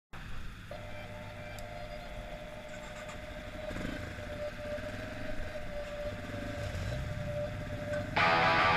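Yamaha trail bike engine idling, a low steady rumble, with a steady high-pitched whine over it.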